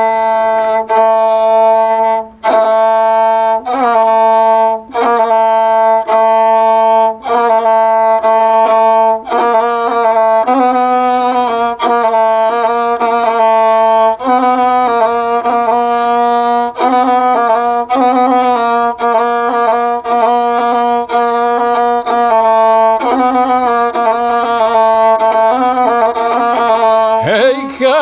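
Gusle, the single-string bowed folk fiddle, playing a solo instrumental introduction: a melody bowed in short phrases, the note changing about every second or so with brief breaks between strokes.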